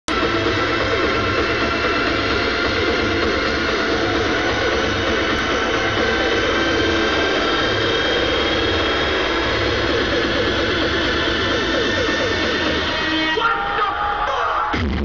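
Loud electronic dance music from a festival stage sound system, dense and unbroken with many held tones over a steady low end, mixed with crowd noise. About half a second before the end the bass drops out and the sound thins.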